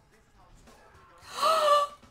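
A woman's short voiced gasp of shock about a second and a half in, breathy and rising briefly in pitch, after a near-quiet stretch.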